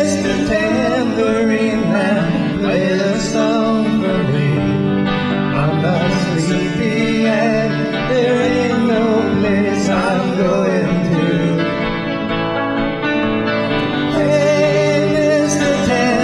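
Live folk-rock performance: two electric guitars strummed while male voices sing into microphones.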